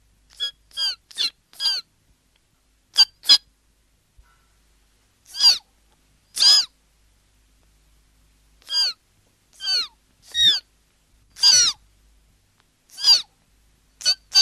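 A cartoon bird's calls: about a dozen short, high calls, each falling in pitch. They come in loose groups: four quick ones at the start, a quick pair, then single calls roughly a second apart.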